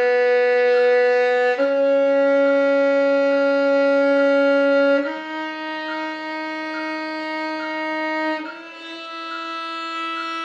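Solo violin playing long bowed notes at a slow practice tempo, each held about three and a half seconds. The note changes three times, stepping higher each time in a rising line.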